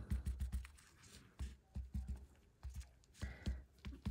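Quiet, irregular tapping of a damp cloth pad dabbed on an old cardboard baseball card and the mat beneath it, a few light taps a second.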